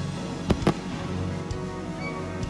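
Two aerial firework shells bursting, sharp bangs close together about half a second in, over the steady instrumental backing of a song.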